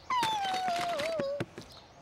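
A worm puppet character's squeaky cartoon voice: one squeal lasting just over a second, sliding down in pitch, with a few faint clicks.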